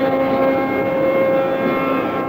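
Carnatic classical music: one long note held at a steady pitch over the tanpura drone, in raga Keeravani.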